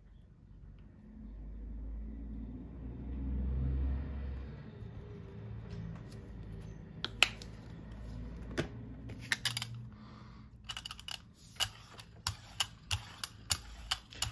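Handling noise and a few sharp clicks as acrylic paint is squeezed from a flip-cap tube onto a gel plate. In the last few seconds a run of irregular clicks, about three a second, as a brayer rolls the tacky paint out over the plate.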